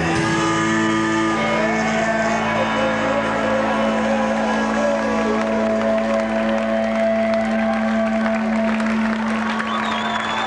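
A live band's song ends: one sustained note rings on steadily, with an audience cheering and applauding over it.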